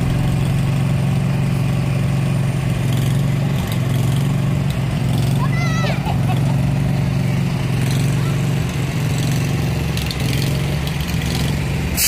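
Vehicle engines running steadily under crowd chatter, with a brief high-pitched call about halfway through.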